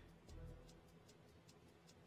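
Near silence in a pause between sentences, with only faint, even ticking, about six ticks a second, over a low hum.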